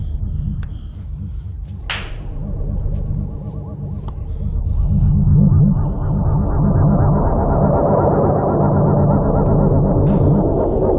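A low rumbling drone of a tense film score that swells louder about five seconds in, with higher sustained tones layered over it. A short swish cuts through about two seconds in.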